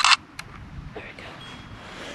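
DSLR camera shutter firing: a short, sharp snap, then a second, fainter click a little under half a second later.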